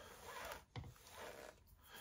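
Near silence: room tone, with faint soft handling noise and one brief faint click about three-quarters of a second in.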